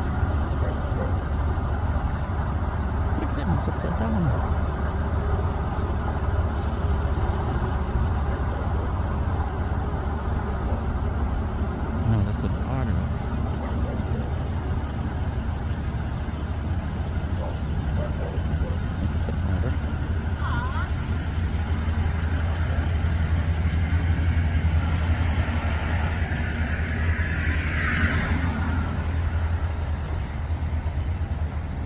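A steady low rumble, with faint voices now and then.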